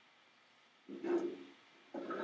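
Near silence, then a single short vocal sound, under a second long, about a second in.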